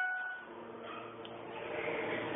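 The last ring of a Schindler elevator's arrival chime fading out, followed about half a second in by a low, steady hum of the elevator's door machinery as the car doors open at the landing.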